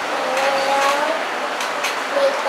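A young child's voice speaking softly, answering with his name, over a steady background hiss.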